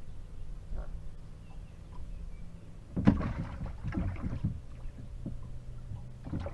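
Small waves slapping against the hull of a boat in a quick cluster of splashes about halfway through, over a low steady hum.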